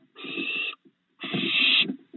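Barn owl owlets giving rasping hiss calls: two harsh hisses, each about two-thirds of a second long, with a short pause between.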